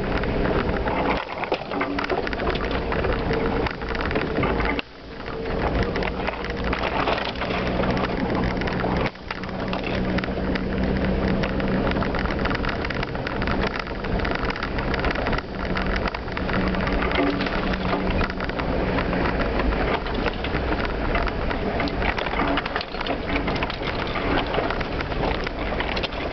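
Jeep Cherokee driving over a rough, snowy trail, heard from inside the cab: a dense, constant clatter of rattles and knocks over a steady engine hum.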